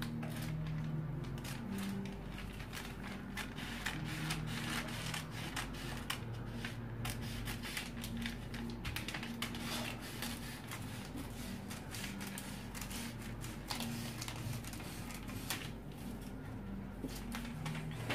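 Scissors cutting through brown paper pattern paper in a steady run of irregular snips, with the paper rustling as it is handled.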